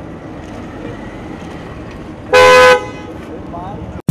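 A car horn sounds one short, loud honk about two seconds in, over a steady background of street noise and murmuring voices.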